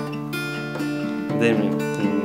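Acoustic guitar strummed at about two strokes a second, its chords ringing between strokes, under a man singing the opening line of the song.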